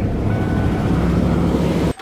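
Plow truck's engine running steadily just after being jump-started from a portable jump starter box; the sound cuts off abruptly near the end.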